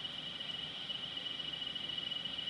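A steady high-pitched tone holding one pitch, over faint room noise.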